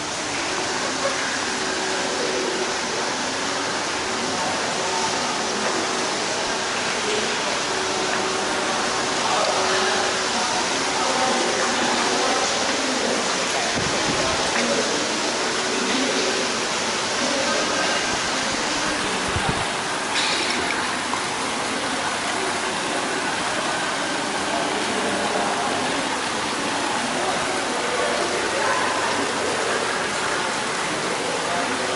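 Water pouring steadily from spouts into an indoor pool, a continuous splashing rush, with people's voices chattering in the background.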